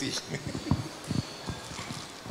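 Handheld microphone handling noise: a few dull, irregular knocks and bumps as the microphone is picked up and passed between panelists.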